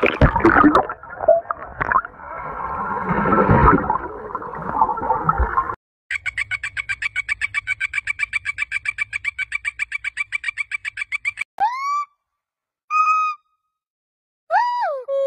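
A frog calling in a fast, even trill of about eight pulses a second, lasting some five seconds. Before it comes a few seconds of loud, rough, noisy sound. After it, near the end, come two short whistle-like calls, the first one rising.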